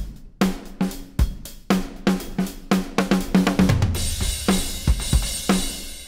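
Sampled acoustic drum kit from the Abbey Road Modern Drums library in Kontakt playing a programmed groove of kick, snare and hi-hat. About three and a half seconds in, a fill leads into a crash cymbal that rings on to near the end.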